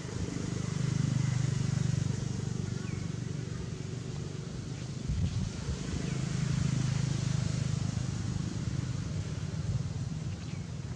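A low engine hum, as from a motor vehicle running nearby, swelling twice, with a few faint short high chirps over it.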